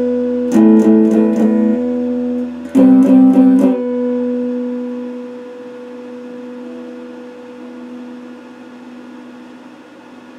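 Electric guitar playing a few picked notes and chords. The last one is struck about three seconds in and left to ring, fading slowly over about six seconds.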